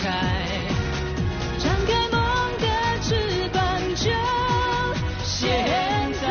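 A man singing a Chinese pop song into a microphone over full band backing, holding high notes with vibrato.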